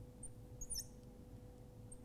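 Felt-tip marker squeaking faintly on a glass lightboard as it writes: a few short, high-pitched chirps, with a cluster near the middle. A faint steady hum lies underneath.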